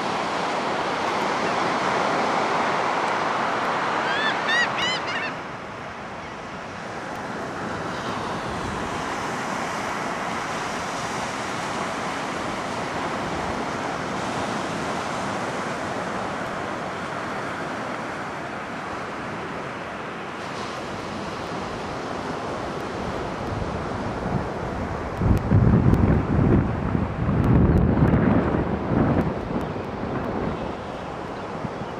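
Ocean surf breaking on a beach, a steady wash of noise. About four seconds in, a bird gives a quick run of several rising calls. Near the end, gusts of wind buffet the microphone with loud low rumbles.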